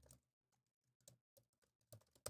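Near silence with faint computer-keyboard keystrokes, a scattering of light clicks.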